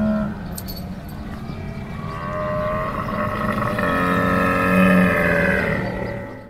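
A camel's one long, low call, growing louder about four to five seconds in and then fading out.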